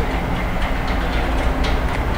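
Steady background noise with a low rumble, no clear events.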